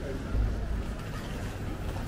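Wind buffeting the camera's microphone: a low rumble with a stronger gust about half a second in, over faint street ambience.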